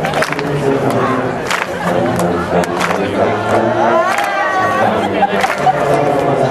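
A massed section of sousaphones playing sustained low chords that shift in pitch, with spectators talking close by.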